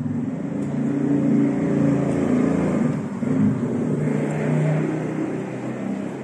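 Original 1970s Mitsubishi SP Type passenger elevator arriving and its doors opening: a loud, low, wavering mechanical rumble that starts as the car arrives and eases off near the end.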